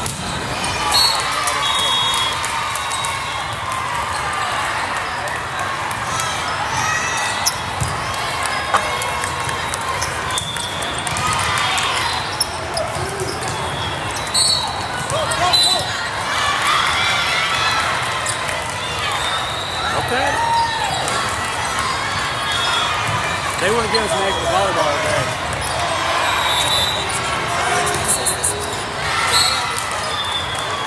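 Indoor volleyball play: the ball struck now and then with sharp smacks, and sneakers squeaking on the court, over the steady chatter and shouts of spectators filling a large hall.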